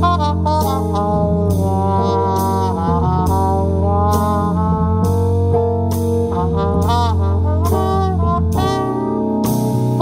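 Live jazz combo playing a slow tune: a trumpet carries the melody with vibrato over keyboard bass, guitar and drums, with a cymbal struck on each beat.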